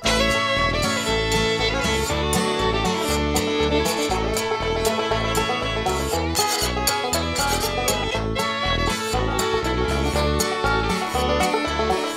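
Instrumental bluegrass hoedown: acoustic guitar strumming, fiddle and picked banjo over a steady, bouncing bass beat.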